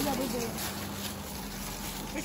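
Indistinct voices talking quietly, mostly in the first half-second, over a steady low outdoor hum; no rubber-band snap is heard.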